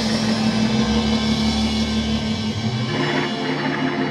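Rock band playing live on electric guitar, bass and drum kit. A low note is held, then a repeating riff starts about three seconds in.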